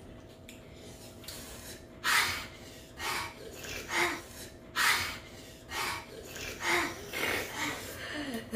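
A child breathing hard in short, sharp breaths through the mouth, about seven in a row roughly a second apart, sucking air in to cool a mouth burning from spicy noodles.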